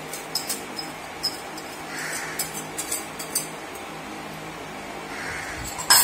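Metal wire whisk scraping and tapping against a ceramic plate and bowl as pumpkin puree is scraped into the batter: a run of light clicks, then one sharp clink near the end.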